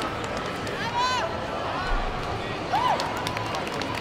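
Busy sports-hall background of many voices, with a few distant calls rising above the babble. Several short, sharp slaps or knocks come in the second half.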